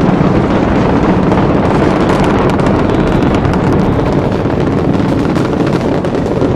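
Space Shuttle in powered climb: a loud, steady, dense crackling rumble from its solid rocket boosters and main engines.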